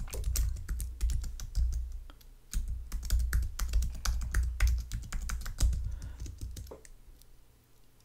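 Typing on a computer keyboard: rapid runs of keystroke clicks, with a short pause a little over two seconds in, stopping near the end.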